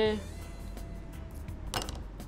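A pair of scissors giving one short, sharp metallic snip near the end, cutting latex binding thread.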